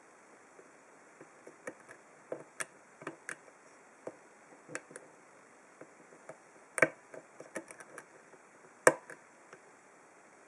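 A hook pick working the pins of a five-pin brass padlock with a wire tension wrench: irregular light metallic clicks and taps, with two sharper clicks about seven and nine seconds in.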